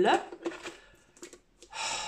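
A woman's voice trailing off at the start, then a few faint light clicks of product packaging being handled, and a short hiss near the end.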